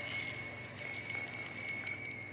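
Round brass bells of an Eiffel Tower wind chime ringing as it is handled: a steady high ring that holds throughout, with a few light clinks.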